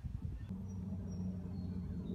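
Outdoor ambience: a steady low hum that sets in about half a second in after a click, with a few faint, short high chirps from birds above it.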